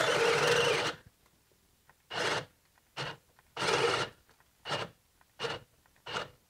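DeWalt 12-volt cordless drill on a 3 Ah battery boring into pine with a one-inch spade bit, the bit rasping through the wood. It runs for about a second, then comes on only in short spurts with pauses between, struggling in the cut.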